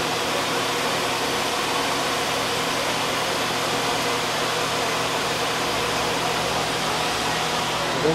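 Steady rush of cooling fans and blown air from an open-bench liquid-nitrogen overclocking rig under benchmark load, with a low steady hum underneath.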